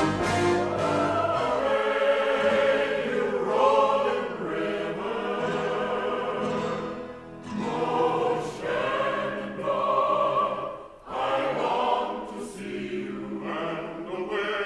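Soundtrack music: a choir singing in harmony with orchestral accompaniment, with brief pauses about seven and eleven seconds in.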